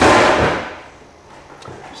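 A loud, sudden crash that dies away over about a second: the stripped plastic laptop top case, with its glued-in trackpad, thrown down as scrap.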